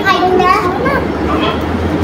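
Young children's voices at play, short bits of talk and vocal sounds, over a steady low hum.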